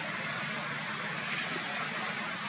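Steady outdoor background noise: an even hiss with no distinct events and no calls.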